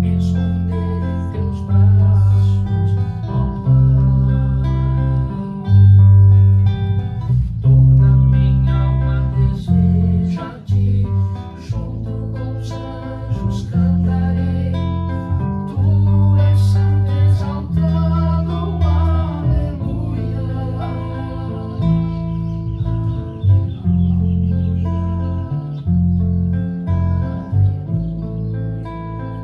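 An acoustic guitar and an electric bass playing an instrumental tune together, the bass notes loudest and changing about once a second.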